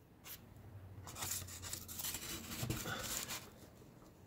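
Faint, irregular scraping and rustling of cardboard being pushed under a glued greenware clay tile on a tabletop to wedge it level, starting about a second in and stopping near the end.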